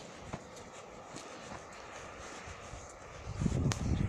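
Footsteps on a concrete paving-block sidewalk, a few sharp clicks over a low hiss. About three seconds in, a loud, uneven low rumble on the microphone takes over.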